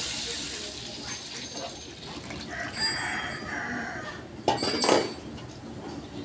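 Water poured into a hot metal wok of chicken feet, the sizzle fading over the first second or two. Then a metal spatula clinks and scrapes against the wok, loudest a little before the end.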